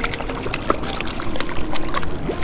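Water splashing and sloshing as a hooked channel catfish thrashes in shallow, weedy water at the bank, in irregular bursts.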